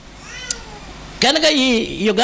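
A cat meowing once, faintly: a short call that rises and then falls, with a small click in the middle of it.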